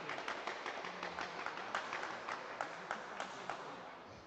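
Small audience applauding, a patter of scattered hand claps that thins out and fades near the end.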